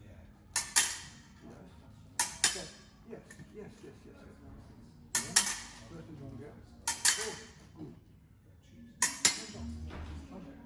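Épée blades clashing in wheelchair fencing: five bursts of blade contact about two seconds apart, each a quick double metallic clink with a short ring.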